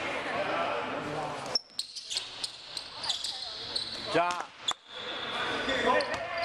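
Basketball dribbled on a hardwood gym floor, with voices carrying in the gym around it. The sound drops out briefly twice.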